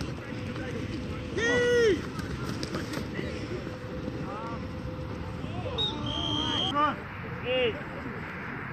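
Men's short shouts across a football field during a play, the loudest about a second and a half in. About six seconds in, a referee's whistle sounds for under a second, followed by two more shouts.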